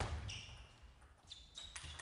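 Table tennis rally: a celluloid ball clicking off rackets and the table several times, with short high squeaks of shoes on the hall floor.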